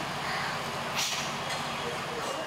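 A vehicle engine running steadily with a low rumble, and a short hiss about a second in.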